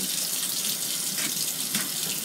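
Kitchen sink tap running steadily, water splashing as dishes are washed under it.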